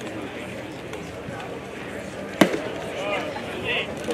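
A single sharp pop from a pitched baseball striking about halfway through, over a background murmur of voices.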